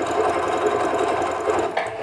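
Singer Patchwork electronic sewing machine stitching a test seam through cotton fabric at a steady, fast rate, then stopping near the end. The seam is a check of the balance between upper and bobbin thread tension.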